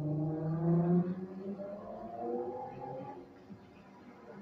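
Low humming with a slowly wavering pitch, lasting about three seconds and fading near the end.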